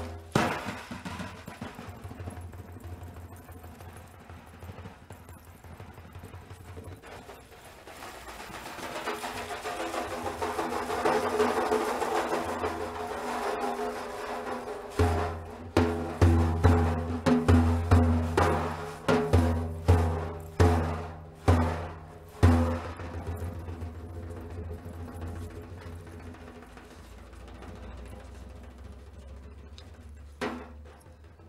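Daf, a large Persian frame drum, played by hand: a few strikes, then a soft rolling passage that swells into a bright shimmer, then about a dozen hard beats roughly two a second, after which it dies away.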